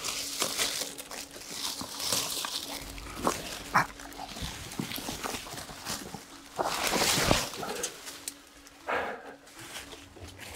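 Leaves, ivy and branches rustling and cracking as someone pushes and crawls through dense undergrowth, in uneven bursts, with a few short sharp sounds among them.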